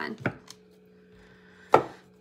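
A single sharp knock about three-quarters of the way through as a deck of tarot cards is set down or tapped against the table, over a faint steady hum.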